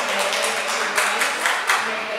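Scattered applause from spectators, irregular claps several times a second echoing in a large hall.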